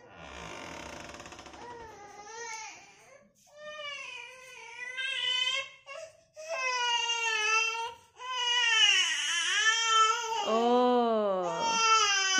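Infant crying in repeated wailing bouts with short breaths between them, growing louder toward the end.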